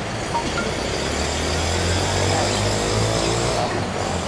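A low, steady engine hum, like a motor vehicle running nearby, swelling about a second in and holding.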